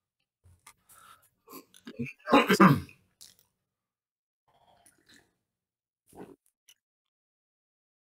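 A man clearing his throat with a short, throaty grunt about two and a half seconds in, then taking sips from a travel mug and swallowing, with small mouth noises in between.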